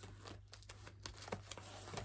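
Faint rustling and light ticks of plastic page protectors and cardstock pages being turned over on the metal rings of a binder.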